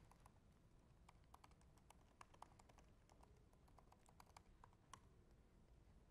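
Faint typing on a computer keyboard: a quick, uneven run of light key clicks that stops about a second before the end.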